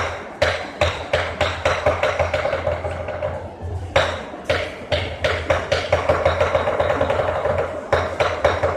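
Chinese dragon dance percussion: drum, cymbals and gong struck in a steady beat about three times a second, with a ringing tone over the strikes. There is a short lull about three seconds in, then a loud crash at about four seconds and the beat goes on.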